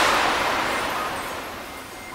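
A rushing whoosh sound effect that peaks at once and then fades away slowly, with a few faint chime-like notes coming in near the end as the intro music starts.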